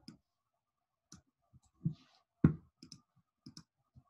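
A scatter of short computer clicks, about seven, from a mouse and keyboard used to copy a web address and paste it into a form field. The loudest comes about two and a half seconds in.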